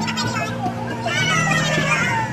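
Background music with held bass notes under lively crowd chatter and excited, high-pitched voices.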